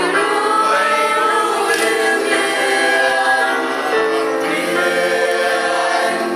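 Mixed choir of men and women singing together, in long held notes that move from pitch to pitch.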